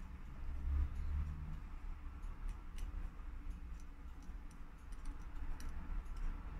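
Faint, irregular small clicks and ticks as a wooden stick pushes the rotor of a Miyota 8200 automatic watch movement, coming more often in the second half, over a low handling rumble.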